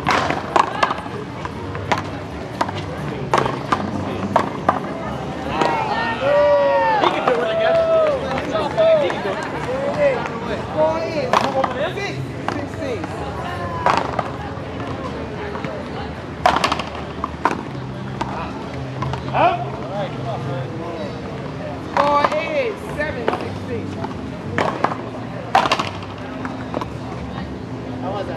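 Paddleball rally: sharp, irregularly spaced pops of paddles striking the ball and the ball hitting the wall and court, with voices in the background.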